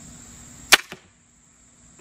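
TenPoint Viper S400 crossbow firing: one sharp, loud crack of the string release about three-quarters of a second in, then a fainter knock about a fifth of a second later as the bolt strikes the foam deer target. Crickets keep up a steady high-pitched trill behind it.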